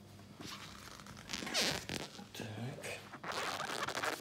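Rough swishing and rustling of cloth being handled close to the microphone, likely a terry towel dragged over the jars. There are two bursts: a loud one about a second and a half in and another near the end.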